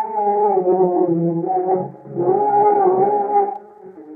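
Male voice singing long, wavering held notes in Arabic classical style, accompanied by oud. There are two sustained phrases, with a brief dip between them about halfway through.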